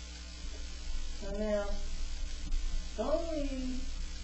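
A steady low electrical hum or buzz in the recording, with two short wordless vocal sounds from the speaker about a second in and again near the end, the second one falling in pitch.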